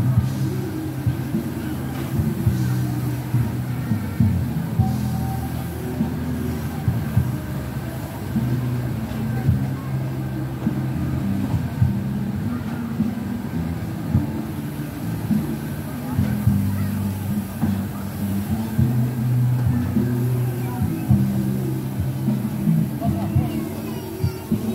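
Carousel music playing steadily, its low notes changing every half second or so.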